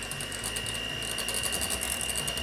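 Electric hand mixer running, its beaters whipping cream in a glass bowl: a steady motor whine with a fast ticking rattle that gets busier about a second in.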